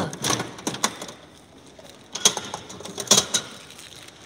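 Gachapon capsule-toy machine's dial being turned by hand, giving a run of ratcheting clicks, then two louder knocks about two and three seconds in.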